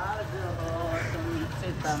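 A man's voice talking over a low, steady rumble.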